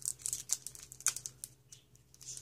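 A Pokémon booster pack's foil wrapper crinkling and tearing as it is pulled open by hand: a run of irregular, sharp little crackles.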